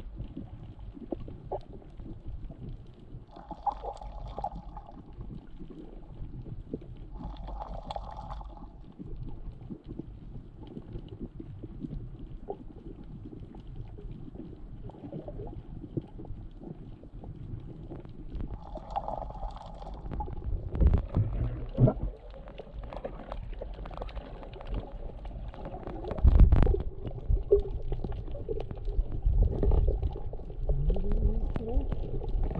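Underwater sound from a camera held below the surface while snorkeling: low rumbling water movement against the housing with scattered faint clicks. Three short muffled whooshes come a few seconds apart, and heavier low thumps of water hit the camera in the second half.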